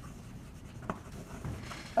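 Chalk writing on a blackboard: faint scratching strokes, with one sharper tap about a second in.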